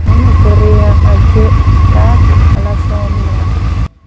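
Honda Hornet motorcycle engine running with a loud, steady low rumble, faint voices over it; the sound cuts off abruptly near the end.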